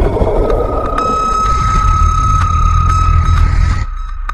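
Sound-effect drone on a film soundtrack: a low rumble with one steady high tone that comes in about a second in. Both cut off suddenly just before the end.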